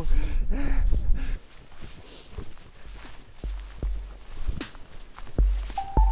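A man laughing over a low rumble on the microphone for about the first second and a half. Then background music fades in, with scattered light clicks and deep bass notes about three and a half and five and a half seconds in.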